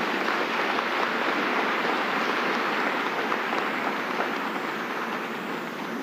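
Audience applauding: a steady clatter of many hands clapping that eases slightly toward the end.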